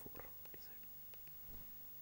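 Quiet room tone with a low steady hum, a softly spoken word near the start and a few faint clicks.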